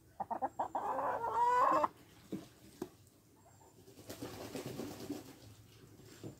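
Hen clucking: a quick run of short clucks in the first two seconds, ending in a longer drawn-out call.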